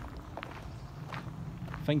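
Footsteps of a person walking on a sandy garden path, a few soft steps at walking pace.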